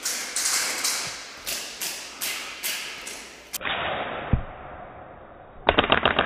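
Airsoft gunfire echoing in a large room: about nine sharp cracks at two to three a second. After a lull with one low thump, a quick burst of rapid shots comes near the end.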